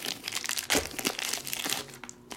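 Shiny plastic wrapper of a trading card pack crinkling as it is crumpled and pulled open by hand, a run of irregular crackles.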